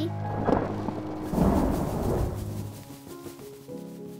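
Thunder rumbling in two rolls, the second one longer and louder, dying away about three seconds in, over soft background music.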